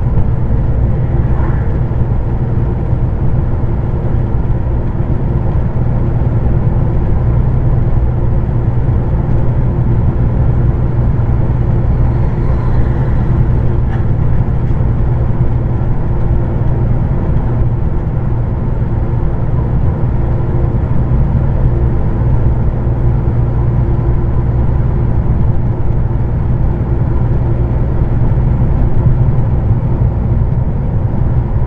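Steady drone of a heavy truck's diesel engine and road noise inside the cab, driving at a constant speed on a highway. A deep rumble dominates throughout.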